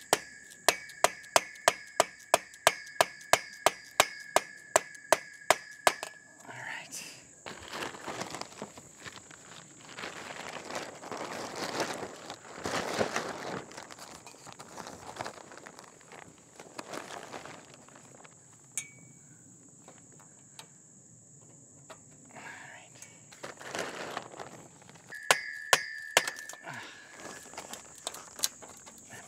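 Steel tube frame poles of a portable garage being banged apart: a run of sharp metallic knocks, about three a second, each ringing briefly, for about six seconds. Then the rustle of a canvas cover being handled, and a couple more ringing knocks near the end.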